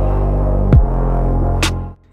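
Tail of an electronic logo-intro sting: a steady, loud low drone with one deep falling hit a little under a second in and a short bright swoosh near the end, after which the sound drops away.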